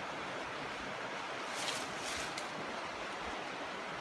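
Creek water running steadily as a soft, even rush, with a brief rustle about halfway through.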